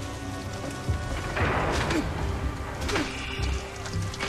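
Television soundtrack: background music with sound effects, including a rushing swell of noise about a second and a half in and a few sharp clicks near the three-second mark.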